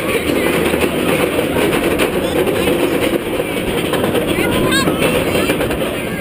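Steel roller coaster train being pulled up its chain lift hill: a continuous rapid clacking of the anti-rollback dogs with the rattle of the lift chain.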